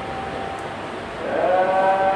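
A voice chanting in long, steady held notes; the sound dips a little, then a new, louder held note begins a little over a second in.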